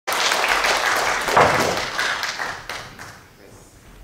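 Audience clapping, dense and loud at first, thinning out and dying away about three seconds in.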